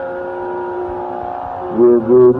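Carnatic concert music: one long, steady held note with its overtones, over a drone. Near the end a louder new phrase begins, with the pitch bending.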